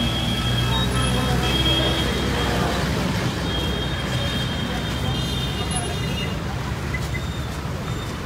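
A vehicle engine runs close by with a steady low hum, under a crowd's mixed voices on a busy street.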